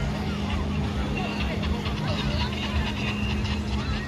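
Many beachgoers talking and shouting at once, voices overlapping at a distance, over a steady low hum.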